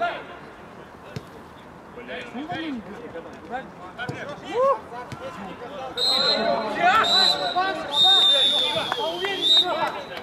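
Men shouting and calling out to each other on a football pitch, with a few dull thuds like a ball being kicked. About six seconds in the voices get louder and busier, and a high, steady whistle-like tone holds over them for several seconds.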